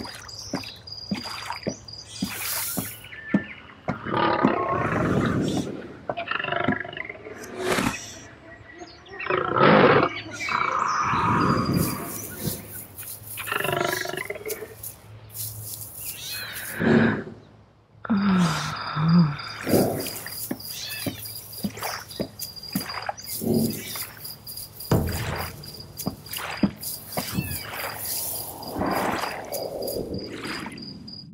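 Layered jungle sound effects: big-cat roars and other wild-animal calls, with whooshes and impacts, over a rainforest ambience with a steady, high insect chirping.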